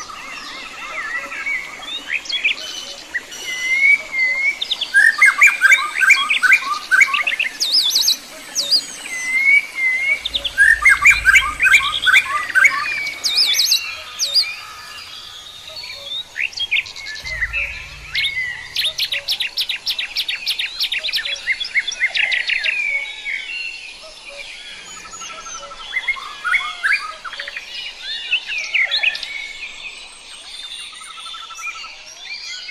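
Several songbirds chirping and singing, with overlapping trills and rapid runs of repeated high notes. Two brief low rumbles occur near the middle.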